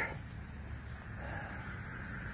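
Steady outdoor background: a high, even hiss with a low rumble underneath and nothing sudden.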